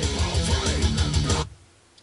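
Heavy metal track with guitars and a steady kick drum playing through the stock Subaru BRZ speakers, its mid range muddy. The music cuts off suddenly about one and a half seconds in.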